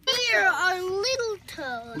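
A person's high-pitched, drawn-out voice: one long sound of about a second and a half, falling in pitch at first and then held, followed near the end by the start of further speech.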